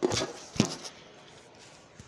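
Two short, loud rubbing knocks from a phone or camera being handled with its lens covered, about half a second apart near the start, then quiet room noise.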